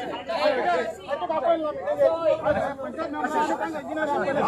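Speech only: several men talking over one another in an argument.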